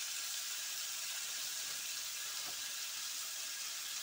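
A steady, even hiss of oil sizzling in a steel pan on the stove.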